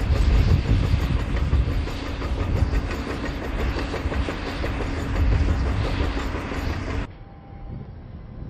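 A loud, steady mechanical rumble with a low hum and a rattling texture, like heavy machinery running, which cuts off suddenly about seven seconds in.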